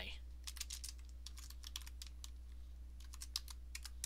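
Typing on a computer keyboard: keystrokes in short, quick runs with brief pauses between them, over a steady low hum.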